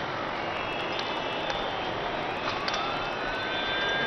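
A steady rumbling roar fills the street, with a siren wailing over it, its pitch sliding down and then rising again from about halfway through. A few short sharp clicks cut through.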